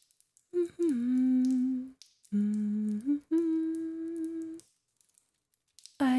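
A woman humming three held notes: the first slides down and then holds, the second holds low before stepping up, and the third holds steady.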